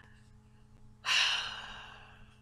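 A woman's breathy sigh: one exhale about a second in that fades away over about a second.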